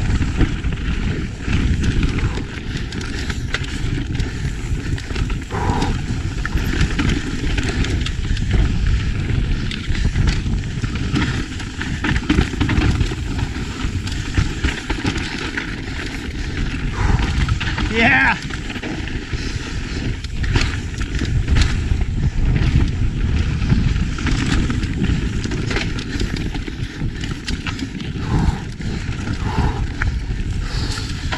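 Mountain bike descending a dry, loose, rocky dirt trail at speed: a steady rumble of tyres over dirt and rocks, with the bike rattling and wind buffeting the camera microphone. A short wavering high-pitched sound comes about two-thirds of the way through.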